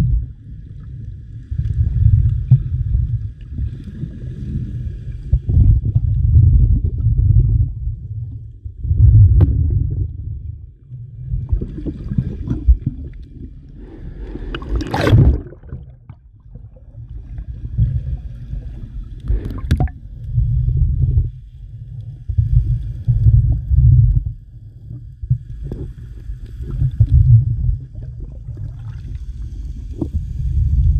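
Underwater rumble of water moving against the camera and its housing, swelling and fading every couple of seconds, with a faint hum on and off and two sharper swishes near the middle.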